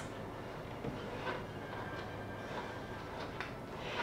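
Quiet room noise with a steady low hum and a few faint, soft rustles as stamped cross-stitch fabric is handled.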